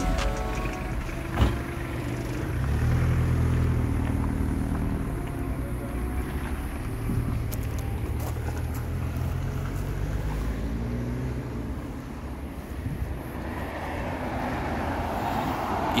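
Motor vehicle engine running, heard as a low steady rumble that swells about two seconds in and fades after about eleven seconds.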